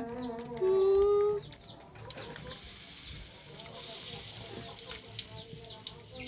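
Chickens calling: one held call about a second in, then faint short chirps, over the faint hiss of dough frying in oil.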